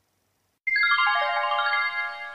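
A short musical sting: a quick descending run of ringing notes, starting about two-thirds of a second in, each note sustained so that they pile up, used as a transition between segments.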